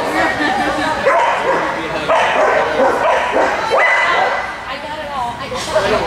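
Dogs barking several times, with people's voices in the background.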